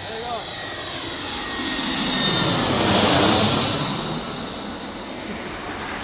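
Airbus A320 twin-jet airliner on landing approach passing close by. Its engine roar builds to a peak about three seconds in and then fades, and a high whine drops in pitch as it goes past.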